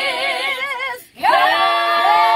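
A group of women singing together a cappella, their held notes wavering with vibrato. About halfway through the singing cuts off briefly, then the group takes up new long-held notes.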